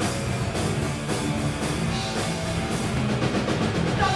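Streetpunk/Oi band playing live and loud: electric guitars, bass and a drum kit with regular cymbal hits, with no vocals.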